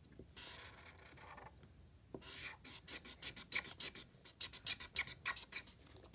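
Art marker tip scrubbing on paper while colouring in a drawing: one soft stroke about a second long, then from about two seconds in a run of quick scratchy back-and-forth strokes, about five a second, faint.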